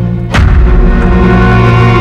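Dramatic background score: sustained low chords, cut by a single loud boom about a third of a second in, followed by a swell of deep bass.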